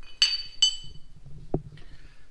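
Two sharp metallic clinks about half a second apart, each ringing briefly, from loose steel bracket pieces knocking together; a single dull knock follows a little past halfway.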